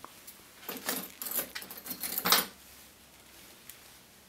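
Metal fly-tying tools clinking and rattling as they are picked up and handled: a cluster of light clicks and jingles over about two seconds, loudest near the end of the cluster.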